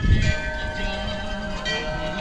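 A temple bell struck once just after the start, ringing on with several steady tones.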